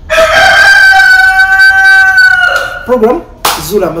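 A rooster crowing: one loud, long call of about two and a half seconds that rises slightly at the start and falls away at the end.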